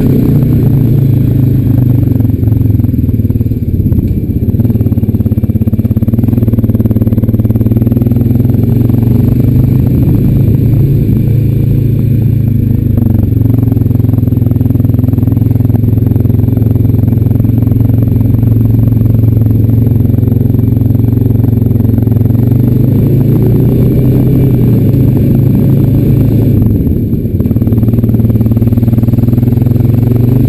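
Honda Rancher 420 AT ATV's single-cylinder four-stroke engine running under load as the quad is ridden through snow. Its pitch shifts with the throttle, and it eases off briefly near the end before picking back up.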